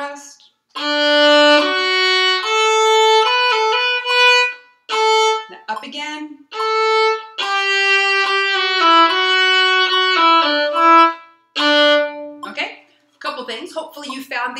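Solo violin playing a slow exercise of separate bowed notes that move step by step, with a few short rests between phrases. The playing stops about twelve seconds in and a woman's voice follows.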